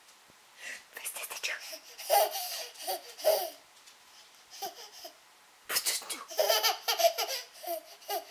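A nine-month-old baby laughing in two bouts of short, breathy bursts: one starting about a second in, a shorter one near five seconds, and another starting near six seconds.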